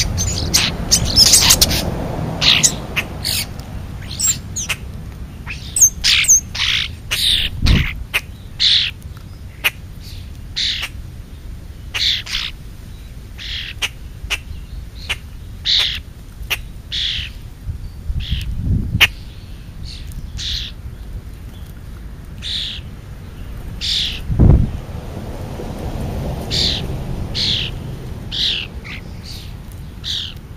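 Birds calling: a run of short, high chirps throughout, at times several a second. Three dull low thumps close to the microphone are spread through it, along with brief rustling.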